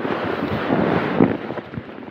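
Nylon rustling as a person shuffles across an inflatable sleeping pad inside a tent, with wind buffeting the tent. The rustling dies down after about a second and a half.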